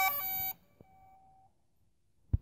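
Electronic logo sting: a quick run of clean beep-like tones that stops about half a second in, followed by a faint held tone that fades out.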